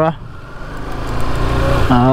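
Motorcycle engine pulling away from low speed, its sound and the rush of air growing steadily louder as the bike speeds up.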